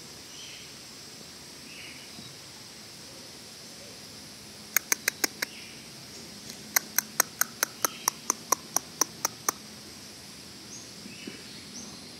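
Two runs of sharp clicks against a quiet background: five quick ones about five seconds in, then about a dozen more at roughly four a second.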